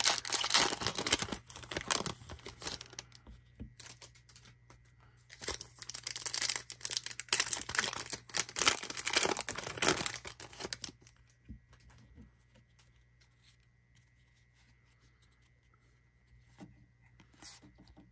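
Foil wrapper of a Panini Hoops trading card pack being torn open and crinkled, in two loud bouts: over the first three seconds and again from about five to eleven seconds in. After that there are only faint clicks of the cards being handled.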